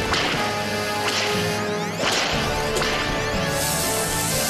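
Cartoon sci-fi ray-beam sound effects: sharp whooshing zaps about once a second from the flying saucers' energy beams, over dramatic action music.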